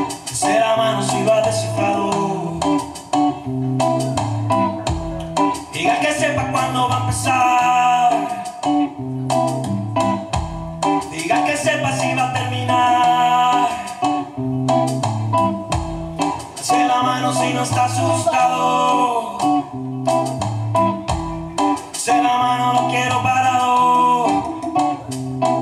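Live instrumental music: an electric guitar plays gliding lead lines over a low bass figure and a steady percussion beat. The phrase repeats about every five to six seconds.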